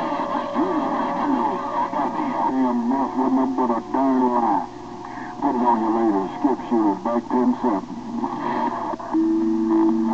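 Voices of CB operators coming in over a transceiver's speaker on the 27.025 MHz channel, narrow-band and distorted so the words are hard to make out, with more than one voice overlapping. A steady whistle tone sets in about nine seconds in.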